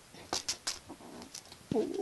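Small pet claw clippers clicking and rattling a few times as a kitten mouths them and drags them across carpet.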